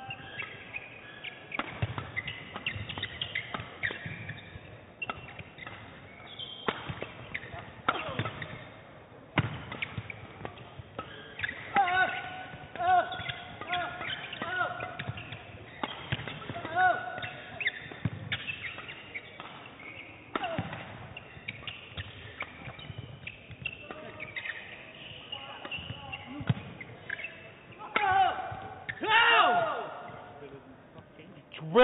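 Badminton rally in a hall: rackets striking the shuttlecock in sharp cracks at irregular intervals, with court shoes squeaking on the floor between shots.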